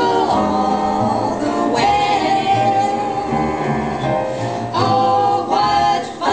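Female vocal trio singing close harmony in long held notes, over an instrumental accompaniment with a steady bass line.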